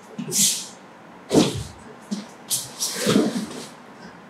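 Two grapplers scuffling on foam training mats: a few short bursts of rustling and shuffling, with a heavier thump about a second and a half in as the foot-sweep takedown brings a body down onto the mat.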